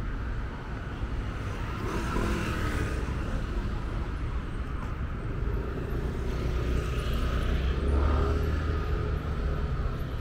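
City road traffic: vehicles passing with a steady low engine rumble, swelling about two seconds in and again near eight seconds as vehicles go by.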